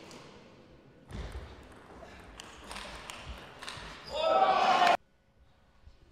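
Large-hall ambience with a few light clicks of a table tennis ball. About four seconds in, a louder voice comes in and cuts off suddenly into near silence.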